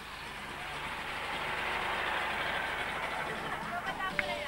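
A car's engine and tyres draw near, a steady rushing noise that grows louder over the first two seconds and then holds. Faint voices sound beneath it.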